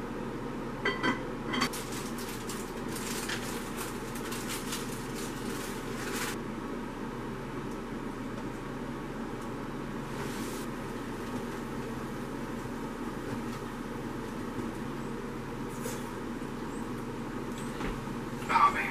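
A steady low mechanical hum throughout, with clattering and scraping of kitchen utensils during the first six seconds and again briefly about ten seconds in, as a pot lid is set down and batter is mixed in a plastic container.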